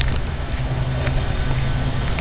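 A steady, low engine hum holding one even pitch, under a rushing noise.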